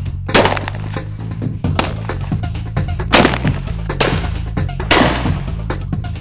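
One shotgun shot at a clay target just after the start, fired from an over-under shotgun right after the call for the clay, over background music. Three more sharp cracks come in the second half.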